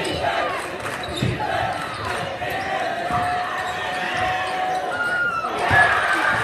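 Basketball bouncing on a hardwood gym floor, a few separate bounces, over the voices of the crowd and players.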